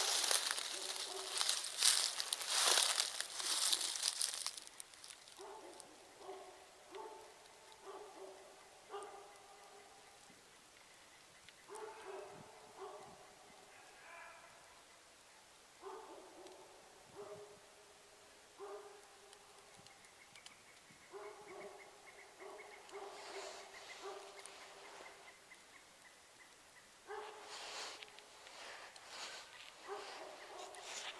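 Hunting hounds baying, a long run of faint, separate bays repeating every second or so through most of the clip. It opens with a few seconds of loud rustling close to the microphone.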